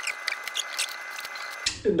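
Small clicks, taps and scrapes of flexible go bars being set and adjusted by hand against freshly glued wooden braces on a guitar top, over a faint steady high hum.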